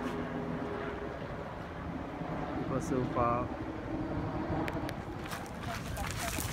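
Outdoor ambience: a steady low rumble, with a person's voice heard briefly about three seconds in.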